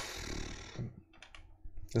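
A breathy noise at first, then a few faint clicks at the computer.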